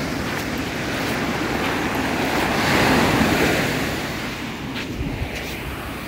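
Small ocean waves breaking and washing up the beach, swelling to a peak about three seconds in and then easing off, with wind buffeting the microphone and a few footsteps on pebbly sand.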